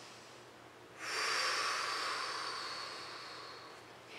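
A woman's single long audible breath during aerial yoga practice, starting suddenly about a second in and fading away over about three seconds.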